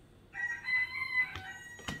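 A rooster crowing: one long call with a steady pitch, starting about a third of a second in and lasting about two seconds, with a sharp click near the end.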